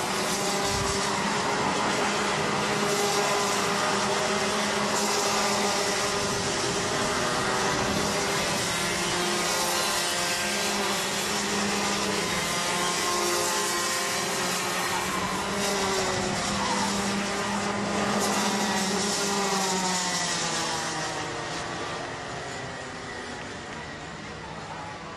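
Several two-stroke kart engines (Rotax Mini Max 125 cc) running together, their pitches rising and falling as they rev and lift off. The sound fades over the last few seconds.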